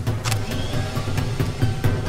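Canister vacuum cleaner motor running as improvised suction for a vacuum delivery of a baby, under background music with a pulsing low beat.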